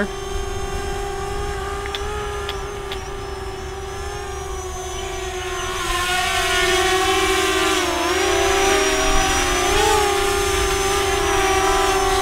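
Eachine EX4 quadcopter's brushless motors and propellers whining steadily in flight, the pitch dipping and rising a few times as the throttle changes. It grows louder about halfway through as the drone flies in close and low.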